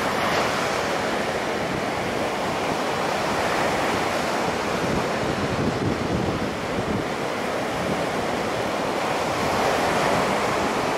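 Surf: choppy waves breaking and washing in against a rock jetty and beach, a steady, unbroken rush of water.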